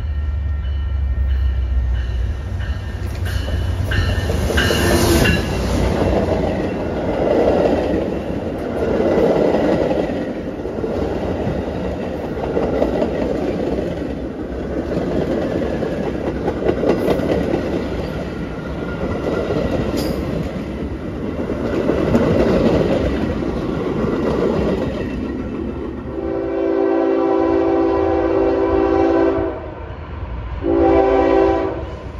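Double-stack intermodal freight train rolling past, with a steady rumble of wheels on rail that swells and fades every couple of seconds as the cars go by. Near the end a train horn blows a held chord for about three seconds.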